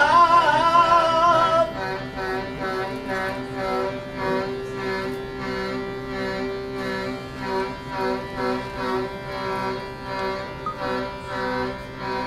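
Live music from an instrument of wooden pipes playing sustained, organ-like chords with a steady pulse. A man's singing voice holds wavering notes over it until it stops about a second and a half in, and the music drops in level there.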